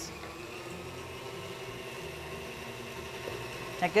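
Electric stand mixer running steadily at a raised speed, its beater creaming butter and sugar in a steel bowl.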